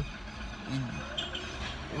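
A low, steady rumble heard inside a car cabin during a pause in talk, with a brief murmured voice sound under a second in.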